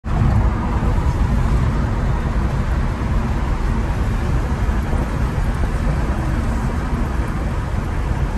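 Steady road noise inside a moving car's cabin: a continuous low rumble of tyres and engine at cruising speed.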